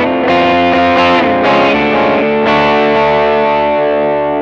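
Electric guitar playing a short run of chords, with new chords struck about every half second early on, and the last one, struck about two and a half seconds in, left ringing and slowly fading.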